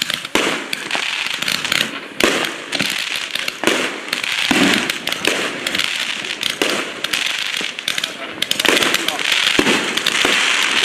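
Combined Roman candle battery of 15 tubes firing continuously: a rapid, uneven run of launch thumps and pops over a steady hiss from the brocade-tailed stars.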